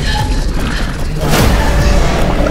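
Film-trailer sound design: a heavy low rumble under mechanical creaking and clanking, with a sharp hit about one and a half seconds in.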